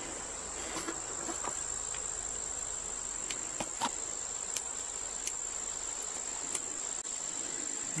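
Faint clicks and light rattles of plastic DC plug adapter tips and cables being handled, a few scattered through the stretch, over a steady high-pitched tone that never changes.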